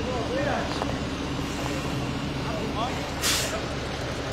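Fire engine running steadily at the scene of a brush fire, with distant voices calling. A short hiss breaks in about three seconds in.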